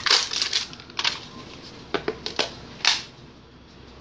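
A thin plastic whipped-topping tub crinkling and crackling as it is squeezed and worked in the hands: a quick cluster of sharp crackles, then single crackles spaced through the next few seconds.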